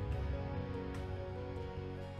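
Soft background score of held, sustained notes, slowly fading.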